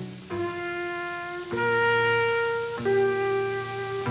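Jazz trumpet holding three long notes in a row, each at a different pitch, with the change coming about a second and a half in and again near three seconds. Lower sustained notes from the band sound underneath.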